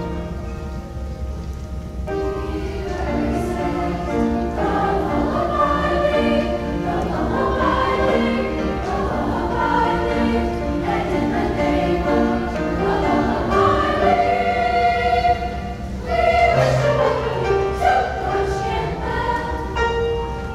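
Seventh-grade concert choir of young mixed voices singing with piano accompaniment. The piano plays alone at first, and the voices come in about two to three seconds in.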